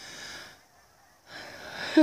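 A person's soft breaths close to the microphone: a short one at the start and another swelling near the end, just ahead of a laugh.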